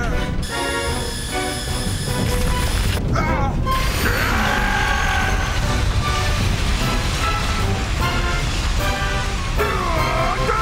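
Background music over a steady low rumble: the sound effect of a spaceship coming down for an emergency landing.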